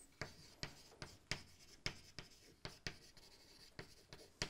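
Chalk writing on a blackboard: a quick, uneven series of short taps and scratches, about two or three strokes a second, as letters are written.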